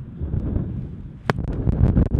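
Wind rumbling on the microphone while a Lowepro Whistler BP 450 AW camera backpack is handled: its padded lid is swung shut, with one sharp click a little over a second in and a few quick ticks after it.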